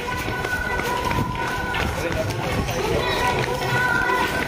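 Hurried footsteps of someone walking fast on a paved walkway, with voices of other people around.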